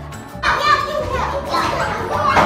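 Many children's voices in a classroom, chattering and calling out together, starting suddenly about half a second in, over background music.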